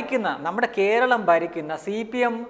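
A man speaking Malayalam.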